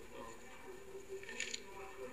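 Faint murmur of voices in a parliament chamber during a vote, heard through a television's speaker, with a short rustle about a second and a half in.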